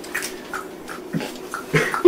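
A dog whimpers softly a couple of times, over faint rustling of a paper envelope being opened.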